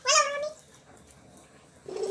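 A child's brief high-pitched, bending vocal sound, like a squeal or mewing whine, in the first half second. After it comes about a second and a half of low room sound, and another child's voice starts near the end.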